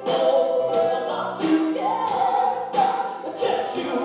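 Live rock band playing, with guitars, keyboard and drums under long held sung notes.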